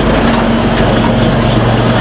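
Automated blood biochemistry analyser running: a steady mechanical whir and hiss over a low, even hum.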